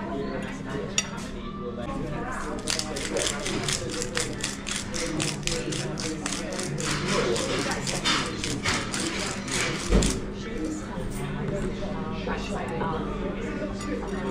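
A glass hand spice grinder twisted over a plate, giving a rapid run of grinding clicks for several seconds, followed by a single thump. Background voices and a steady low hum underneath.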